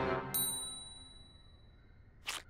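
A single bright, high cartoon 'ding' sound effect struck about a third of a second in, ringing out and fading over about a second, over the tail of a fading music chord.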